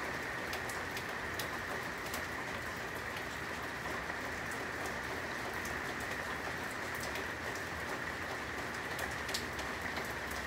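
A steady even hiss with many scattered light ticks, a pattering like rain on a surface.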